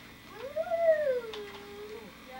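A single long, high-pitched vocal whine that rises, then slides down and holds at a lower pitch.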